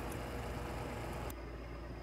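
A steady low hum with a faint hiss over it; the hiss thins out about a second and a half in while the hum carries on.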